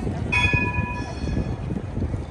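A single bell ding from a tram's warning bell, several clear ringing tones that start suddenly about a third of a second in and fade within about a second and a half. Under it runs a steady low street rumble with wind on the microphone.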